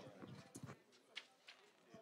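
Near silence: faint outdoor background with a few soft, sharp clicks spaced about half a second apart and faint distant voices.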